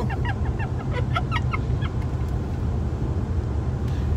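A woman laughing in short choppy bursts for about the first second and a half, then fading out, over the steady low drone of a car's road and engine noise heard from inside the cabin.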